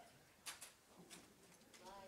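Near silence in a quiet room: faint distant voices, with two soft clicks close together about half a second in.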